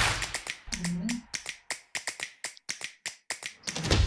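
Sound-effect clicks in a promo video's soundtrack: the electronic beat cuts off about half a second in, and a rapid, even run of sharp clicks follows at about five or six a second. A short low rising tone comes about a second in, and the run ends on a low hit.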